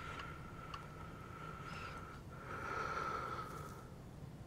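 Faint breathing close to the microphone, with a steady high whistle that breaks once a little past halfway. There are a couple of soft clicks early on.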